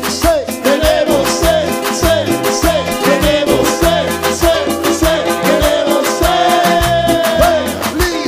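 Instrumental break of a Latin dance band song. A lead melody with sliding, bending notes plays over a steady bass and drum beat, with one long held note near the end.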